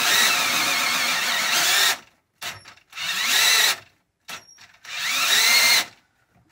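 Battery drill cutting a 30 mm hole through a boat's hull. It runs steadily for about two seconds and cuts out, then restarts twice in short runs with brief blips between, the motor speeding up each time. The battery is going flat halfway through the hole.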